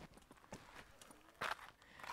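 Faint footsteps of a hiker walking on a trail: a few scattered steps, with one slightly louder, short sound about a second and a half in.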